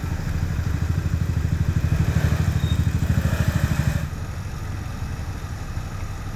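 A motorcycle engine running close by, with a fast, even pulse; it grows louder over the first few seconds and drops away about four seconds in.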